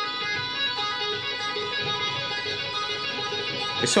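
Electric guitar playing a legato tapping lick: right-hand finger taps on the fretboard joined to the two low notes of a minor pentatonic shape, the tapped note taken from the major pentatonic shape. The notes flow into one another at an even level.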